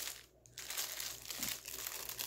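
Small clear plastic packet of metal eyelets crinkling as it is handled, with a brief lull just after the start.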